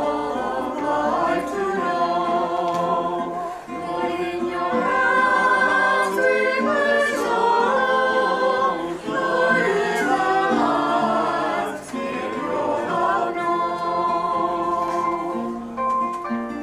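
A choir singing in harmony, several voices holding notes together.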